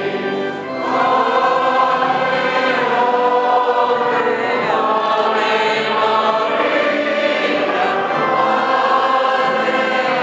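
A choir singing a hymn, many voices holding long notes, with a brief dip in loudness just under a second in.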